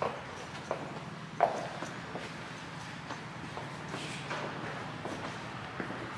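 Footsteps of people walking on a hard showroom floor: a few sharp, irregular taps, the loudest about a second and a half in, over a steady low room hum.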